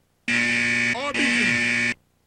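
A loud, steady electronic buzz with a low hum under it. It starts sharply about a quarter second in and cuts off just before the end, with a brief falling glide through it near the middle. It comes from the television's audio during a channel change.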